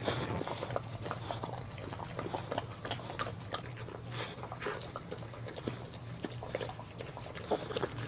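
Mother boxer dog licking and chewing at a newborn puppy's amniotic sac: irregular wet licks, slurps and mouth smacks, over a steady low hum.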